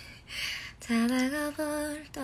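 A woman singing unaccompanied: a soft breathy sound, then from about a second in two short held notes on a steady pitch.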